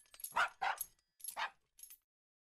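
Cartoon puppy barks: about five short, high yips in quick succession, with brief gaps between them.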